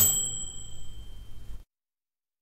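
A single bright ding, the sound effect of an animated logo intro, struck once and ringing high as it fades for about a second and a half, then cut off abruptly.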